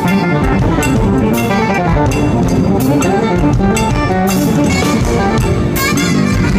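Live jazz: a saxophone soloing over congas and drums, with frequent cymbal hits, loud and dense throughout.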